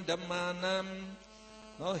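A man's voice reciting in a chant-like monotone, held on one steady pitch for about a second, then dropping away; speech starts again near the end.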